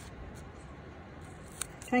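Scissors snipping through paper in short, quiet cuts, with one crisper snip about one and a half seconds in.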